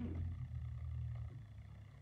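A low, steady hum that fades out about a second and a half in, leaving faint room noise.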